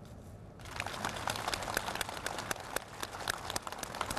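Machinery clattering: many quick, irregular clicks over a steady hiss, setting in about half a second in.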